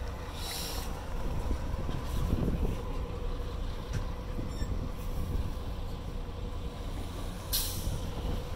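A heavy forklift's engine running under load as it moves a large boat, with a steady low rumble and a steady whine. Two short bursts of hiss come about half a second in and near the end.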